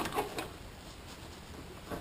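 Quiet room tone with faint hiss and a couple of soft ticks in the first half second. No engine or other clear source.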